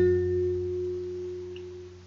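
Acoustic guitar's last chord ringing out and slowly fading away after the end of a sung phrase.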